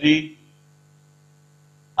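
Steady low electrical mains hum in the recording, just after a spoken word ends.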